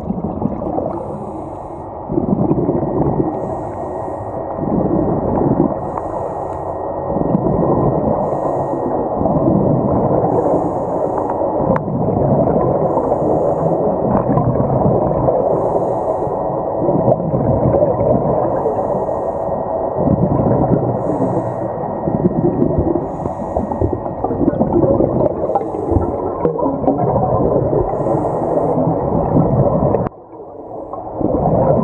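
Air bubbles rumbling and gurgling underwater, heard through an underwater camera, uneven and continuous, with faint short hisses repeating about every second.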